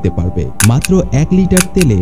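A man's narration in Bengali, with faint background music underneath.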